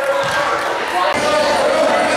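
A basketball bouncing on a gym floor, a couple of low thuds, among players' shouting voices echoing in a large hall.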